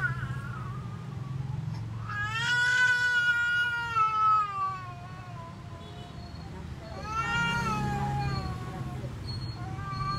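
A wailing voice gives long, drawn-out cries, each rising and then slowly falling in pitch: one lasting about three seconds, a second near the middle and a third starting at the end. A steady low hum runs underneath.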